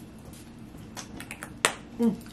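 A few small sharp clicks from hands, then one much louder snap-like crack just before the end.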